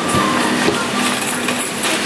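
A shopping trolley rolling and rattling over a tiled supermarket floor, with a few light clicks, amid the steady hum of the store.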